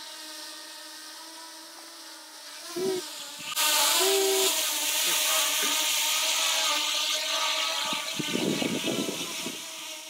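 Small quadcopter drone hovering close by, its propellers giving a steady whine in several pitches at once. From about three and a half seconds in, a loud hiss of wind joins it, with low buffeting on the microphone near the end.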